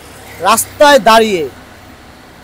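Speech only: a woman's voice saying a few words, starting about half a second in and stopping about a second later, over a faint low hum.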